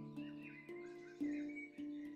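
Steel handpan played with the hands: four single notes about half a second apart, each ringing on and fading, with birdsong chirping faintly behind them.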